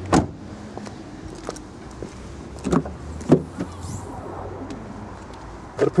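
A Hyundai i10's door shutting with a sharp thud just after the start, then two clunks about three seconds in as the tailgate is unlatched and lifted open.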